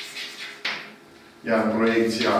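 Chalk writing on a blackboard: a couple of short scratchy strokes in the first second. About one and a half seconds in, a man's voice starts, loud and drawn out.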